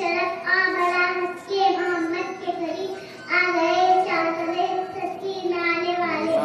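A young girl singing a naat solo, in a melodic devotional chant, her voice holding long, steady notes. There are short breaks between phrases about one and a half and three seconds in.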